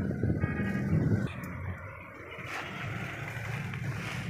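A steady low engine hum runs throughout, louder and rougher for about the first second, then easing.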